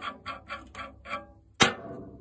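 Quick, evenly spaced plucked notes of background music fading out, then a single sharp metallic clack as a steel nut is set down on a metal workbench.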